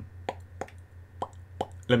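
A few short, sharp clicks, about four spread over two seconds, over a steady low electrical hum.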